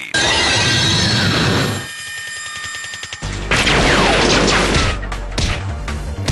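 Television action sound effects over soundtrack music: a loud rushing burst as a suit transformation completes, then quieter for a second or so. A second loud rushing blast follows about three and a half seconds in, with a low hum and sharp crashing impacts near the end.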